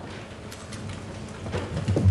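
A steady hiss of room noise picked up by the courtroom microphone in a pause between words, with a low sound building near the end.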